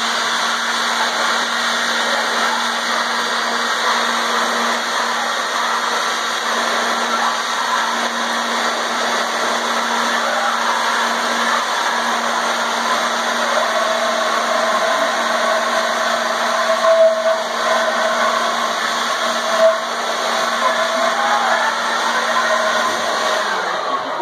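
Handheld electric leaf blower running steadily, its rushing air noise blowing into a tube of ping pong balls. A steady higher tone comes in about halfway through.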